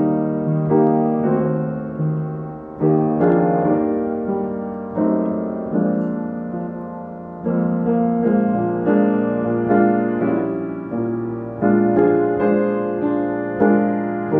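Piano playing a slow hymn tune in full chords, each chord struck and left to fade before the next.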